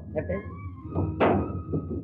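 A man's voice in film dialogue, with faint background film music.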